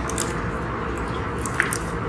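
Steady drone of a jet airliner's cabin, with a few light clicks of small items being handled on a plastic meal tray.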